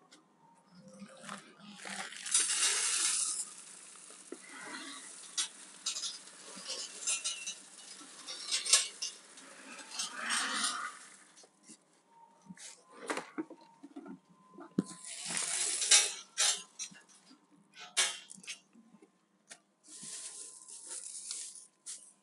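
Gravel poured from a plastic bucket, a rattling hiss of small stones that comes in several bursts, with scattered clinks and knocks in between.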